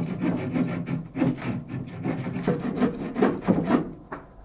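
A wooden board scraping and rubbing, a quick run of rough, irregular strokes that breaks off just before the end.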